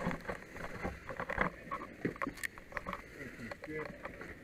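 A brief laugh amid scattered faint clicks and knocks, with a sharp click right at the start.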